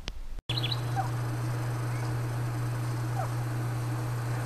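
Steady low engine hum of an idling car, with a few faint bird chirps outside. It cuts in abruptly about half a second in.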